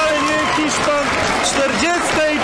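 A man's voice talking excitedly over stadium crowd noise and clapping, just after a goal is scored.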